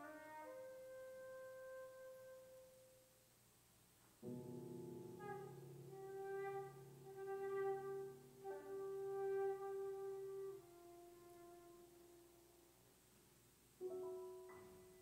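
Concert flute and grand piano playing a slow, soft classical passage: long held flute notes over piano chords struck about four seconds in and again around eight and a half seconds, the sound dying away near the end before a new chord.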